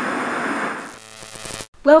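TV-static hiss from a logo transition: a dense crackling hiss that fades out about a second in, then a brighter burst of hiss that cuts off suddenly. A woman starts to speak near the end.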